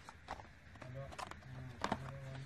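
Cardboard product boxes handled and flipped over by hand, giving a few sharp taps and knocks, the loudest near the end, with light scuffing between them.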